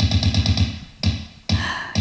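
Music with a fast, even beat playing through a gramophone sculpture's built-in speaker from an iPhone docked on its turntable.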